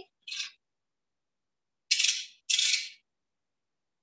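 Tools being handled on a work table: a brief rustle, then two louder half-second rattling scrapes about two seconds in.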